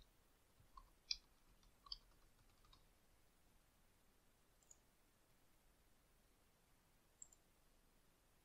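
Near silence with a few faint computer keyboard and mouse clicks: four single clicks in the first three seconds, then two more, one about halfway through and one near the end.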